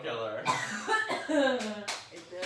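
Voices talking and laughing, with a short sharp breathy burst near the end.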